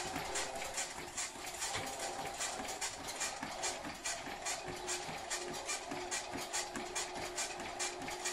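Running footfalls pounding on a treadmill belt, about three strides a second, over the steady hum of the treadmill. The runner is at a set speed of 6.5 on an incline of 5.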